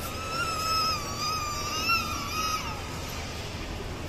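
A young child's long, high-pitched squeal, held for about two and a half seconds with a slight waver and sliding down at the end.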